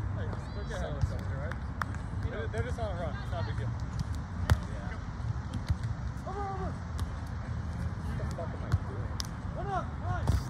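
Outdoor ambience at a sand volleyball court: scattered distant voices over a steady low rumble, with a few sharp isolated slaps of the kind a volleyball makes when struck.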